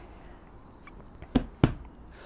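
Two short knocks about a third of a second apart, a hand coming down on the wooden bench seat.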